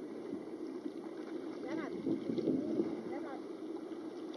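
Water sloshing and lapping around a camera held at the sea surface, a steady low churning, with a few brief muffled voice-like sounds near the middle.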